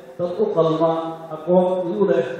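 A man's voice chanting into a microphone in long, level-held notes, like a recitation rather than plain talk.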